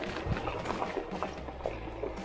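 Bicycle tyres rolling over a gravel trail, an irregular crunching and clicking of loose stones, with background music underneath.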